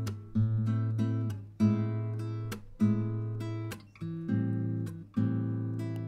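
Playback of an acoustic guitar recorded with two condenser microphones, one at the soundhole and one on the neck, heard together. Five strummed chords, each ringing about a second before the next. The recording is unprocessed, with no EQ or effects.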